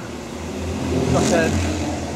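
A motor vehicle's engine running close by, growing louder over the first second and a half, with a brief voice over it.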